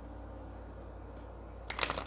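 Oracle card deck being shuffled by hand: a quick run of crisp card flicks and snaps near the end, over a steady low hum.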